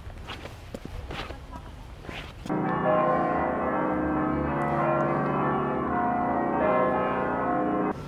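Footsteps on cobblestones, then about two and a half seconds in, church bells start ringing loudly, a dense peal of many overlapping ringing tones that cuts off suddenly at the end.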